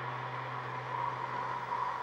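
Pause in speech: steady low hum and faint hiss of room tone.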